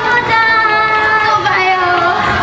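Female pop vocals over backing music through a stage sound system, singing long held notes that bend slightly in pitch.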